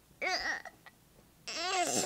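A young girl's voice: two short bits of speech, one near the start and one near the end, with a faint click between.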